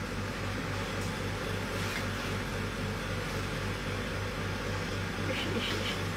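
Kitchen range hood extractor fan running with a steady whooshing hum, over the low sizzle of sambal frying slowly on low heat in a wok.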